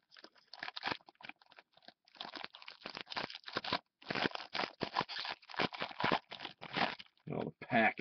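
Foil trading-card pack being torn open and pulled apart by hand: irregular crinkling and crackling of the foil wrapper, pausing briefly about halfway through.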